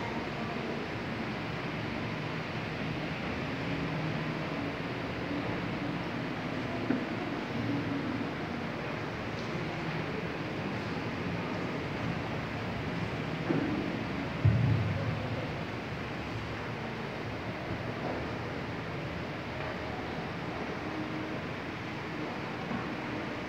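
Steady background noise of a church interior with faint low sounds, and a brief bump about fourteen and a half seconds in.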